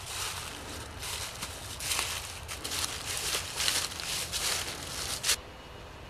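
Irregular rustling noise that swells in short surges about once a second, then stops abruptly a little after five seconds in.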